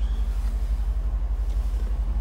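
Mercedes-AMG C63 S's 4.0-litre twin-turbo V8 idling, a steady low rumble with an even pulse, heard from inside the cabin.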